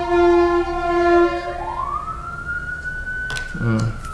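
Emergency vehicle siren wailing: a slow tone that sinks, swings back up about two seconds in and holds. A brief 'mm' from a man's voice comes near the end.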